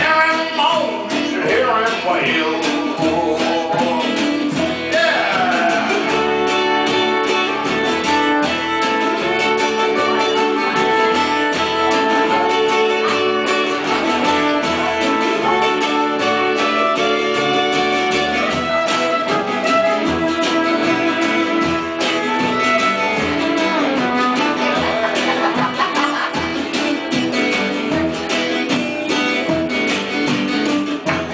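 Live acoustic blues band playing, with a strummed acoustic guitar and a fiddle line that slides between notes.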